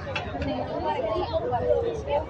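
Chatter of people talking nearby, several voices overlapping over a steady crowd background.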